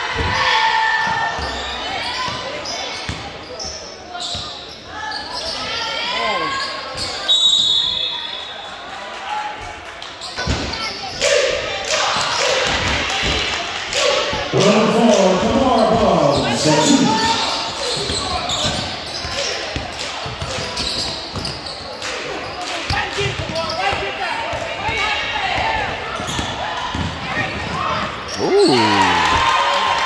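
A basketball being dribbled on a hardwood gym floor, with sharp bounces echoing in a large hall. Spectators talk and shout throughout, loudest in a burst of yelling about halfway through.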